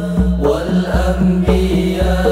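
Sholawat sung by a group of boys' voices into microphones, over hand-struck frame drums keeping a steady, even beat.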